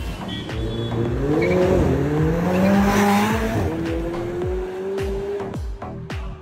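McLaren 720S twin-turbo V8 accelerating hard, its revs climbing steadily and then dropping at a gear change about three and a half seconds in, before it carries on at a steadier pitch. Music with a heavy, regular bass beat plays over it.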